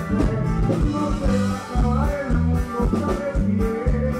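Live norteño band music with a steady dance beat: bajo sexto, saxophone, bass guitar and drums playing together.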